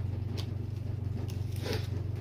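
Light handling of trading cards in the hands, a few faint clicks and a short rustle near the end, over a steady low hum.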